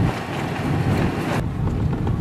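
Wind rushing over the microphone and the low road rumble of a pickup truck driving on a dirt road, heard from the cab. The hiss eases a little about one and a half seconds in.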